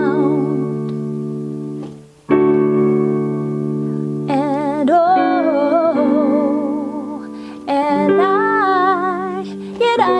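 Electronic keyboard playing sustained chords that change three times, a short gap before the first change, with a voice singing long held vowel notes with vibrato over them in two phrases.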